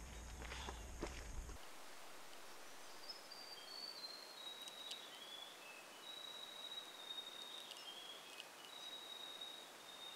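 Bike tyres and footsteps crunching on a gravel track for the first second and a half, then a cut to quiet bush ambience. Over it a bird whistles high, pure notes that step downward and are sometimes held for a second or more.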